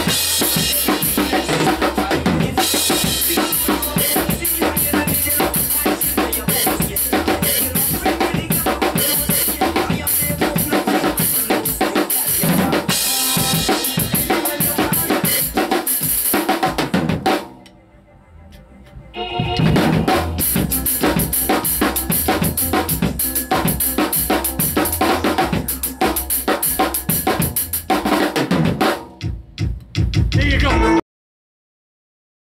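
Acoustic drum kit played in a steady reggae groove, with snare, bass drum and cymbals, over the song's recorded backing track. About two-thirds through, nearly everything drops out for about two seconds before the groove comes back in.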